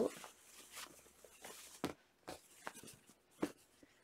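Faint rustling and brushing of cotton fabric as a sewn face-mask piece is turned right side out by hand, with a few soft ticks in the second half.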